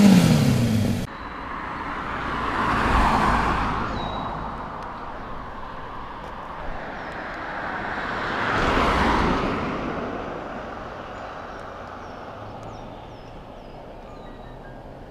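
A KTM 50 SX 50cc two-stroke engine revving, its pitch falling before it cuts off suddenly about a second in. Then two vehicles pass, each a swell of road noise that rises and fades, about six seconds apart, with faint bird chirps near the end.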